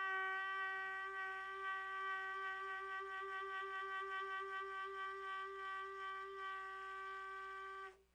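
Baritone saxophone holding one long, high note that begins to waver slowly about a second in, eases slightly in loudness, and stops just before the end.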